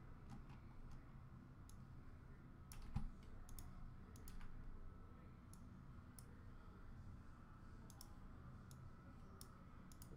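Faint, scattered clicks of a computer mouse and keyboard, with one louder thump about three seconds in, over a low, steady room hum.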